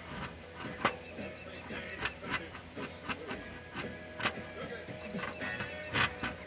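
Knife blade scraping down a fatwood stick held upright on a wooden block: a series of sharp, irregular scraping strokes as resin-rich shavings and dust are shaved off for tinder.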